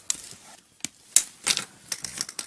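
Hands fastening a part onto a plastic pipe frame: a handful of sharp, separate clicks over soft rustling.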